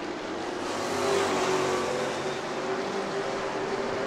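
A field of Sportsman stock cars racing around an asphalt short-track oval. Their engines blend into one steady drone that grows a little louder about a second in.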